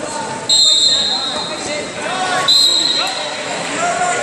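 A whistle blown twice, each a long, steady, shrill blast about two seconds apart, stopping the wrestling action. Voices in the hall carry on underneath.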